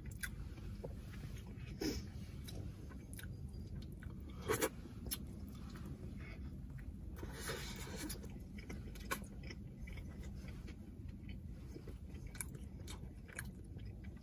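Close-miked mouth sounds of a person chewing a soft flatbread sandwich of meat and rice, with small wet clicks scattered throughout. A low steady hum sits underneath.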